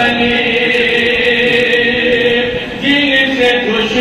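A man's voice chanting an Urdu nazm in long, held sung notes. A new phrase begins about three seconds in.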